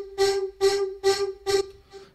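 Vocal-like synth patch, FL Studio's Harmor on its 'Art of Voice' preset with added effects, playing the same note over and over at about two notes a second. The last note fades out near the end.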